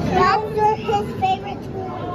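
Children's high voices, chattering and sing-song but with no clear words, in short broken phrases.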